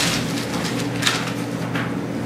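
Pages of a book being turned, a few short papery swishes, over a steady low electrical hum.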